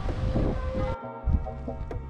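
Background music over wind buffeting the camera microphone. About a second in, the wind noise cuts off suddenly, leaving only the music.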